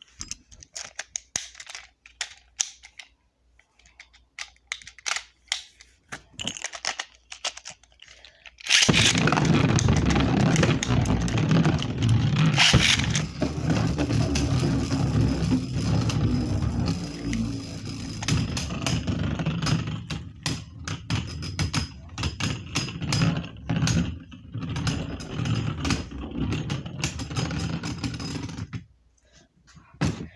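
Light scattered clicks of handling. Then, about nine seconds in, Beyblade spinning tops are launched into a plastic stadium with a sudden loud start, and they spin, scrape and clash against each other and the stadium for about twenty seconds. There is one sharp hit a few seconds after the launch, and the sound dies away near the end as the round finishes.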